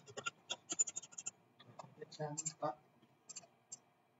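Computer keyboard and mouse clicks: a quick, irregular run of clicks in the first second and a half, then a few scattered ones.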